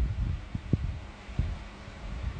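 Handling noise on a phone's microphone: an uneven low rumble with three soft knocks.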